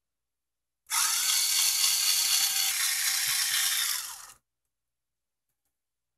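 Electric screwdriver running for about three and a half seconds, backing out a screw that holds a TV's button board. It spins up at the start and trails off near the end.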